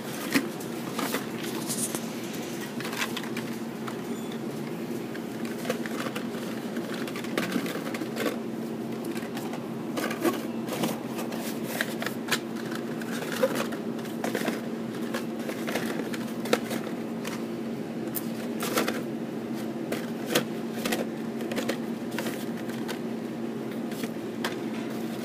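Blister-packed Hot Wheels cards clicking and rustling in irregular taps as they are flipped through and pulled from a cardboard display. A steady low hum runs underneath.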